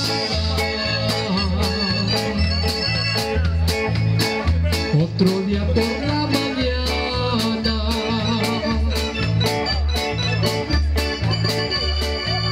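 Live band playing an instrumental passage: a drum kit keeping a steady beat under a moving bass line, keyboard chords and guitar.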